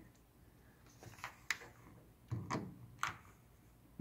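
A few faint, separate clicks and light taps, spread about half a second to a second apart, from hands fitting a small stainless screw onto a cordless drill's bit.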